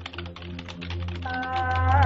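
Typing sound effect: a rapid run of key clicks over background music with a low steady drone. A held chord comes in about halfway through.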